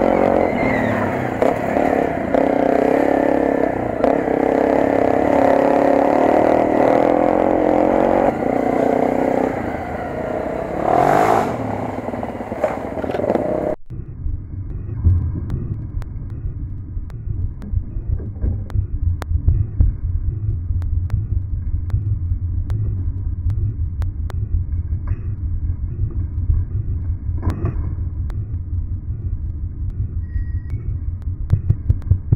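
Off-road motorcycle engine running on a dirt trail, steady under throttle with one rev rising and falling about eleven seconds in. At about fourteen seconds it cuts abruptly to a lower, rapidly pulsing engine rumble at low revs, with scattered clatter from the rough ground.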